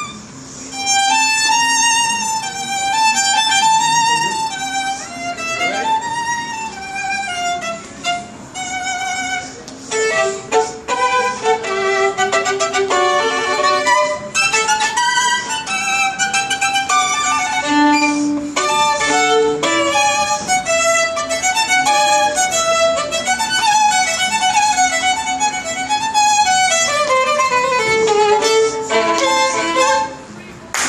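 Solo violin, bowed, playing a lively melody with vibrato on held notes and quick runs of short notes; the piece ends with a final note as the bow lifts off at the very end.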